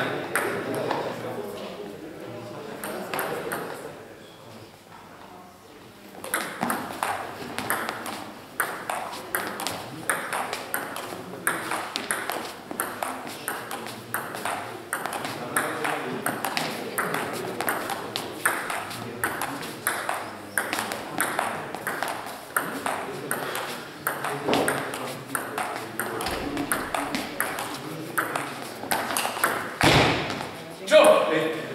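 Table tennis ball clicking off bats and table in quick, regular knocks during rallies, dense from about six seconds in.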